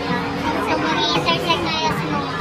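Many overlapping voices at a steady level, some of them high like children's, with no single clear speaker.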